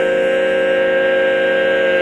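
A barbershop quartet of four unaccompanied male voices holding one sustained chord, steady in pitch.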